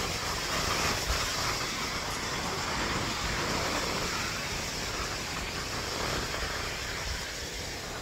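Steady rush of ocean surf breaking on the beach, with wind buffeting the phone's microphone.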